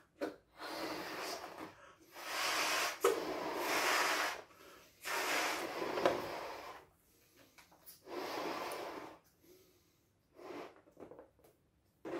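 Latex balloons being blown up by mouth: a run of long, breathy blows into the balloons, each lasting a second or two, with short pauses for breath between them. Near the end come a few short rubbing sounds of balloon rubber as the balloons are knotted.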